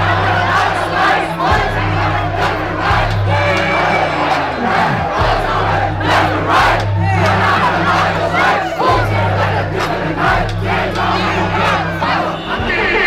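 A large festival crowd yelling and shouting along over a hip-hop track's heavy bass from the PA. The bass comes in long held notes, with a falling slide about four to five seconds in.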